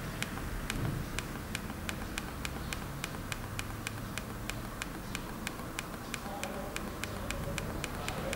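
Evenly spaced clicks, about three a second, from a 7-inch e-book reader as its menu list scrolls one entry per click, over a low background rumble.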